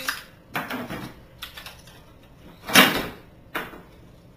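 A few knocks and scrapes of things being handled against a wooden floor. The loudest is a longer scrape near three seconds in, with a sharp knock just after.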